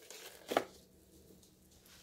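Faint handling rustle, then a single light knock about half a second in as a cardboard four-pack of yogurt cups is set down on top of a clear plastic container.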